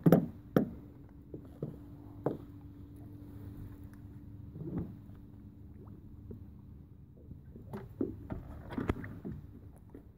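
Irregular knocks and clicks on a small fishing boat's hull and deck as the angler moves about and handles the rod and grip, loudest at the start and again near the end, over a faint steady hum.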